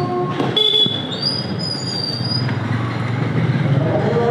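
Motorcycle engine running at low speed with road noise. A high-pitched squeal starts about half a second in, rises in pitch about a second in, and fades out a little later.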